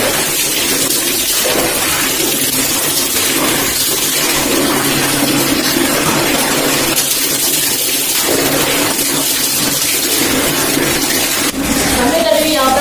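Tap water running and splashing into a plastic tub as henna is rinsed out of long hair, a steady rushing noise with a low hum underneath.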